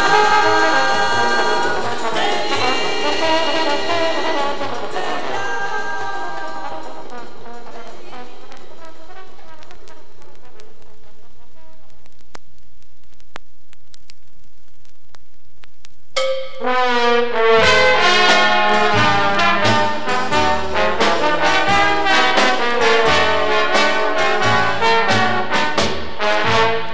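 Jazz trombone ensemble music: one tune's closing chord dies away over the first several seconds, followed by a gap of near silence between tracks with a few faint ticks. About sixteen seconds in, the trombone section comes in sharply to open the next tune.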